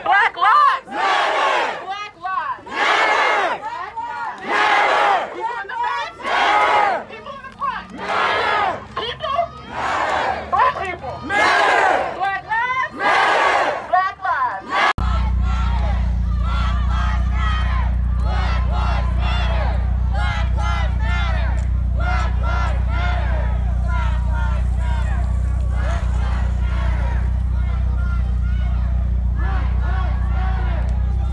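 Protest crowd chanting a slogan in unison, loud and rhythmic, about one call a second. About halfway through, the sound cuts to a steady low engine hum heard from inside a car, with the marchers' chanting and voices fainter outside.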